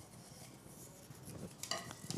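Faint rustling and light clicks of folded paper slips being stirred in a cup as a raffle winner is drawn, with a few slightly louder clicks near the end.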